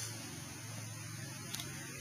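Steady low electrical mains hum with a faint hiss underneath, and a small click about one and a half seconds in.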